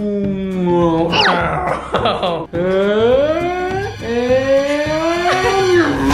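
A man's voice making drawn-out airplane noises, a low hum whose pitch glides slowly down, then rises and falls again, with a brief high rising squeal about a second in.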